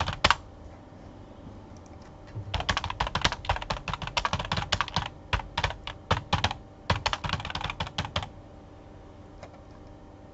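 Computer keyboard typed fast and hard, with a rapid run of keystrokes from about two and a half seconds in until about eight seconds, preceded by a single keystroke at the start.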